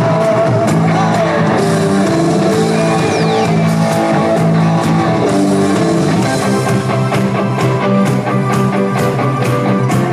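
Live Neapolitan pop band playing an instrumental passage of sustained chords, with regular drum hits that come through more clearly in the second half.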